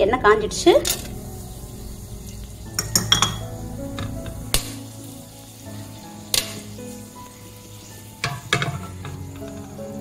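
Whole spices (cloves, cinnamon, cardamom and bay leaves) sizzling in hot oil and ghee in an aluminium pressure cooker. A few sharp crackles come through the faint sizzle as the cloves and cardamom pop in the heat.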